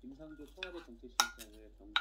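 Wooden spoon stirring diced bell peppers in a ceramic mug, with sharp clicks of the spoon against the mug, two of them loud in the second half.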